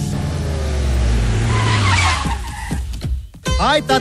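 A car sound effect: a low rumble swelling to a rushing peak about two seconds in, with a brief skid, then fading out. About three and a half seconds in, string music with gliding notes starts.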